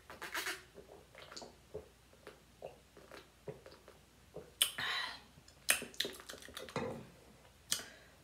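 A person drinking from a stainless steel tumbler: an irregular string of short gulping and swallowing clicks, with a few louder ones in the second half.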